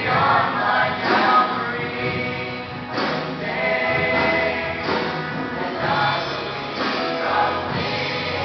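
A mixed youth choir of men and women singing a worship song in several voice parts, holding chords with new phrases every second or so.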